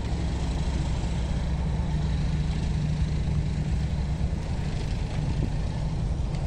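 A large building fire burning with a steady low roar and hiss.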